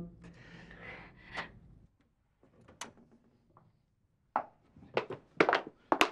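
Faint room sound with a few small clicks, then four sharp wooden knocks or thuds about half a second apart near the end.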